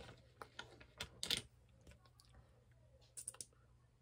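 Faint clicks and taps of small objects being handled: a scattering of clicks in the first second and a half, the loudest just after a second in, then three quick clicks near the end.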